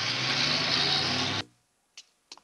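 Car engines running and revving loudly, with a hissing rush of noise over a low engine drone. The sound cuts off abruptly about one and a half seconds in, leaving near silence and a single sharp click at the very end.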